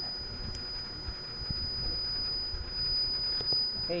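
A steady high-pitched electronic whine from a Kanji Kin Radar V9 long-range locator as it runs in 3D scanning mode, held without change, over a low handling rumble with a few faint clicks.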